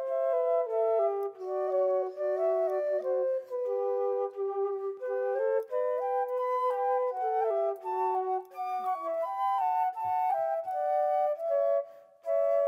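Background music: a light, quick melody of short stepping notes in several parts, with no bass, dipping briefly near the end.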